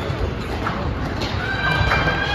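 Squash rally: sharp hits of the ball on racket and walls, and from about halfway a long high squeak of court shoes on the court floor.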